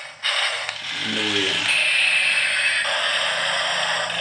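Toy remote-control tank's small electric gear motors whirring and rattling as it drives across a tile floor. The sound drops out briefly at the start, then runs steadily, with a high whine in the middle.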